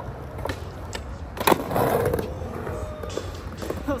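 Skateboard wheels rolling, with a sharp clack of the board about a second and a half in, followed by a short scraping noise.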